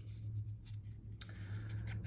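Faint paper rustling with a few light taps: hands handling paper sticker sheets and planner pages.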